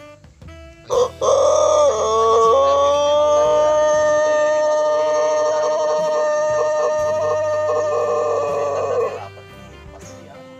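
Ayam pelung rooster, a long-crowing breed, giving one very long crow. It starts about a second in with a short break and a change of pitch early on, then holds one steady drawn-out tone for about six more seconds before stopping near the end.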